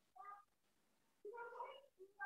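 Near silence broken by two faint, short voice-like calls, a brief one near the start and a longer one in the second half.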